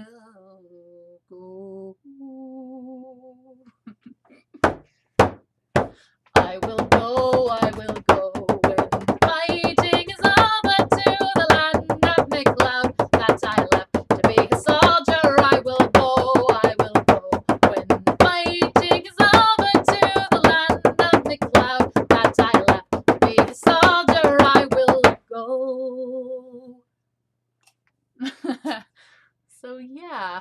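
Synthetic-headed bodhrán beaten with a wooden tipper: a few single strokes, then a fast, continuous rhythm that stops abruptly about three seconds before the end. A woman's singing voice holds a note at the start and carries on over the drumming.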